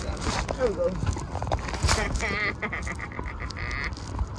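Short, high-pitched, wavering vocal squeals about two seconds in and again near the end, over wind and rubbing noise on the microphone.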